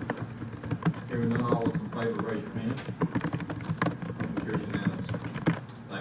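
Typing on a laptop keyboard: quick, irregular key clicks throughout, with low voices murmuring in the room about a second in.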